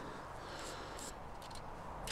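Quiet outdoor background with faint rustling and a few soft ticks as a garden string line is wound around a bamboo cane and pulled taut.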